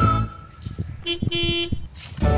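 A horn beeps twice about a second in, a short beep and then a longer one at the same pitch, like a toy bus honking. Background music cuts off just before, and faint knocks from the toy being handled sound in the gap.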